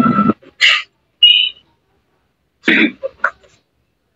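Video-call audio: a humming noise cuts off just after the start, then a few brief cough-like vocal sounds separated by silences.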